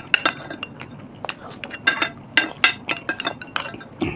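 Metal spoons clinking and scraping against glass plates, a quick uneven run of short ringing taps.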